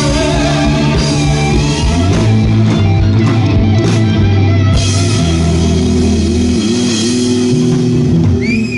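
Rock band playing live: electric guitars over a bass line and drum kit, the music loud and unbroken.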